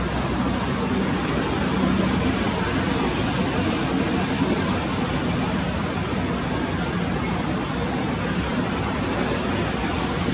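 Steady, even background noise of a ballpark, with no distinct crack of the bat or pop of the catcher's mitt standing out.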